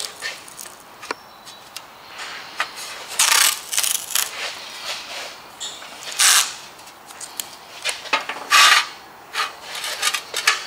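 Masking tape being peeled off its roll in three or four short noisy bursts and pressed down along a rusty sheet-metal fender panel, with small taps and rubs of hands on the metal in between.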